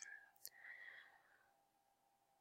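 Near silence: room tone, with a faint click about half a second in and a faint breath-like sound just after it.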